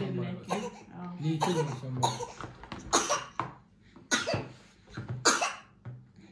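A low wordless voice at first, then a person coughing about four times, roughly a second apart, the last cough the loudest.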